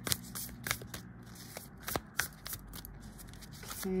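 A deck of tarot cards being shuffled by hand, with irregular soft clicks and slaps of the cards against each other.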